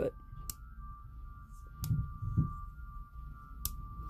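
Safety lever on a WE Tech M9 airsoft pistol slide being flipped by hand, clicking three times as its spring-loaded detent nub snaps into place, with a faint steady tone behind.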